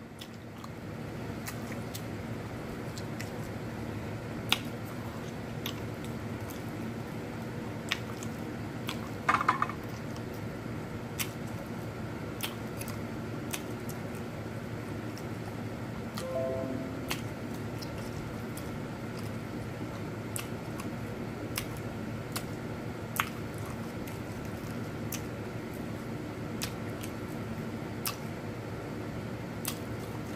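A person chewing and biting spicy chicken wings with wet mouth sounds and scattered sharp clicks, over a steady low background.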